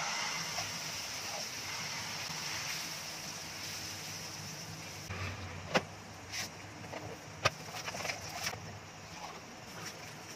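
Pancake batter sizzling in hot oil in a frying pan: the hiss starts suddenly as the batter goes in and fades gradually. A few sharp clicks of a spatula against the pan follow in the second half.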